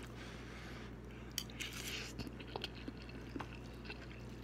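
A person chewing a mouthful of spicy noodles close to the microphone, with a few short, sharp mouth clicks scattered through it. A faint steady low hum runs underneath.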